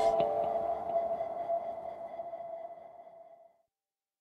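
The last note of an electronic intro jingle ringing on as a single sustained tone and fading away over about three and a half seconds.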